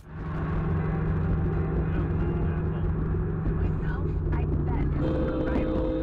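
Road and engine rumble of a car heard from a dashcam inside the cabin, with a steady hum. About five seconds in, a steady two-note tone starts and holds for about two seconds.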